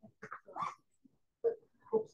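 Indistinct, brief snatches of people's voices in a small room, a few short fragments with pauses between them.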